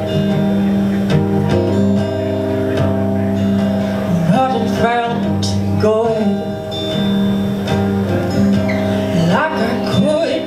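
Acoustic guitar played live with sustained chords, with a woman singing short phrases over it around the middle and again near the end.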